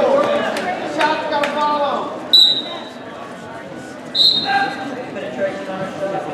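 Two short, high-pitched whistle blasts about two seconds apart, over voices from the crowd.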